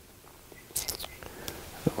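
A man whispering faintly under his breath, with a short mouth click near the end.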